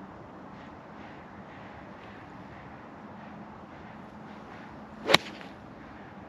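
A golf club is swung and strikes the ball about five seconds in: one brief swish and then a single sharp crack, a full approach shot from about a hundred yards.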